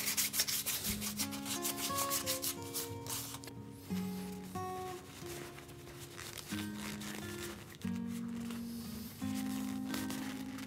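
Sandpaper rubbing on a zebrawood plane handle in quick, rapid back-and-forth strokes for the first three seconds or so. Plucked guitar music comes in about a second in and carries on after the sanding stops.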